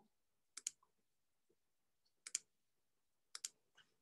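Computer mouse double-clicking three times, faint, while a document is opened for screen sharing.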